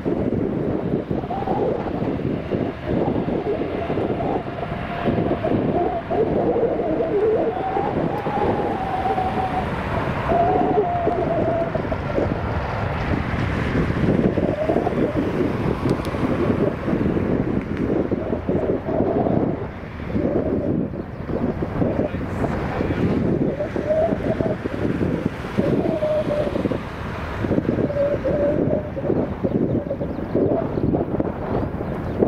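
Jet engines of a Boeing 787 airliner running on the runway: a loud, steady rumble with wavering whining tones, buffeted by gusts of wind on the microphone.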